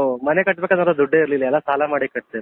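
Speech only: a man talking without a break.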